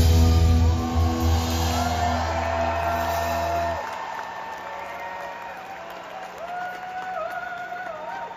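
A live punk rock band's electric guitars and bass hold a final chord through the stage PA after the drums stop; the chord cuts off about four seconds in. Fainter wavering, held high tones carry on after it.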